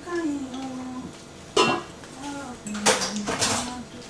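Forks clinking and scraping against bowls during a meal, with a sharp clink about a second and a half in and more near the end, while voices at the table make short murmured sounds.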